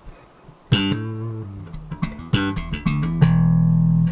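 Zon VB4 four-string electric bass played slap style. About three-quarters of a second in comes a bright slapped note, then a run of sharp slaps and pops, and near the end a held low note rings on.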